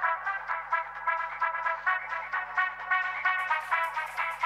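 Background music: an upbeat brass tune led by trumpets over a steady, regular beat.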